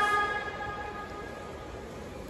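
Steady ambient noise of open stadium stands, a faint even wash with no distinct events, after a held pitched tone fades out in the first half second.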